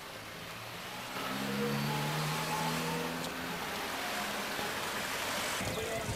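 Outdoor street noise: a steady rush that grows louder about a second in, with a low hum of a few steady tones for a couple of seconds, typical of a passing vehicle's engine.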